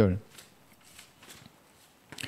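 Faint rustling of thin Bible pages being leafed through to find a passage, a few soft brushes of paper in the first second and a half.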